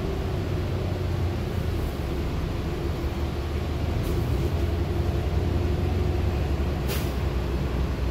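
Transit bus under way, heard from inside the cabin: a steady low engine and road rumble with a faint steady hum. A brief sharp click comes about seven seconds in.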